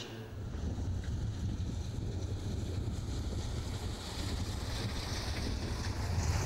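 Strong wind buffeting the microphone on an exposed hilltop: a steady, uneven low rumble with a fainter hiss above it.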